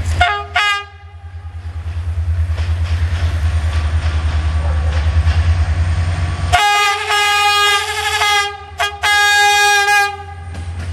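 CFR Class 65 'GM' diesel-electric locomotive approaching, its engine running with a pulsing low rumble. It sounds its air horn: a short blast at the start, then a long blast from about six and a half seconds in, a brief toot, and another long blast near the end.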